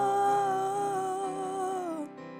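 A woman's voice holds one long note with a slight waver over soft sustained keyboard chords from a Yamaha S90 XS. The note dips in pitch and fades out near the end, leaving the keyboard alone.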